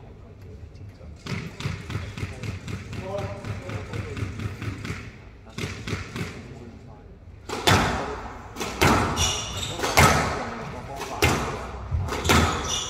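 A squash rally starts about halfway through: sharp smacks of the ball off racket strings and the walls, roughly one a second, each ringing on in the hard-walled court. Voices murmur before play resumes.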